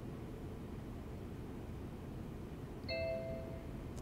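A short electronic chime from the UniFi Protect G4 Doorbell's speaker, about three seconds in and lasting about a second, signalling that its Wi-Fi setup is complete. Faint room noise before it.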